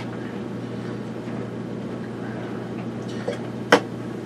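Steady low hum of room background, with a faint click and then a single sharp click near the end.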